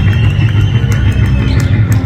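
A live band playing loud amplified rock music, an electric guitar over a heavy, steady bass, with a high note held through most of it.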